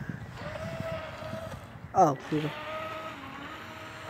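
Small electric motor of a remote-control boat whining at a steady pitch, in two runs of about a second each.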